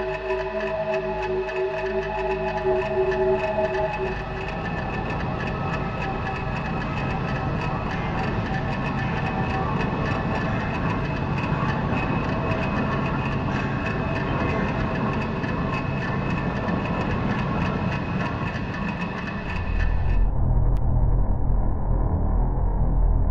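Experimental film soundtrack: held tones give way about four seconds in to a dense, rattling, rumbling noise texture with sustained tones running through it. Near the end the high end cuts off suddenly and a deep low drone takes over.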